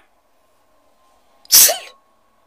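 One short, sharp burst of a man's voice, about a second and a half in, after a stretch of near silence.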